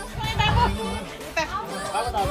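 Several people chatting and talking over one another.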